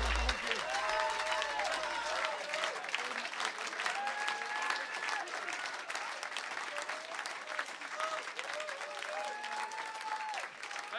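Live audience clapping and cheering after a song, with voices calling out over the applause. A low note from the band stops right at the start, and the clapping eases off slightly toward the end.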